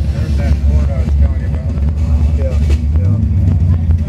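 Steady low rumble of a 1967 Oldsmobile convertible's engine rolling at slow cruising speed, heard from inside the open car, with people's voices over it.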